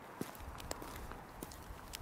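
Faint wind rumbling on the microphone outdoors, with a few soft taps.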